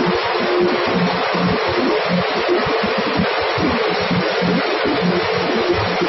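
Grain cleaning machine running with a steady rushing noise as grain pours down its metal outlet chute into a pit.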